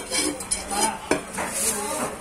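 A large steel knife scraping and knocking on a wooden chopping block as chopped fish is cleared off it, with a few sharp knocks.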